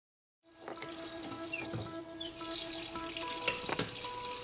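Soft music with held notes over the hiss of a running tap and toothbrushing at a bathroom sink, with a few small clicks. It starts about half a second in.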